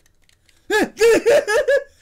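A person laughing: a quick run of high-pitched 'ha' sounds that starts after a short quiet moment, about two-thirds of a second in.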